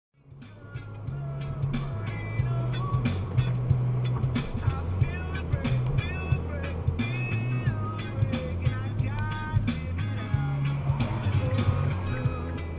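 A song with a heavy bass line, a steady drumbeat and a singing voice, played loud on the car stereo and picked up inside the cabin; it fades in over the first second.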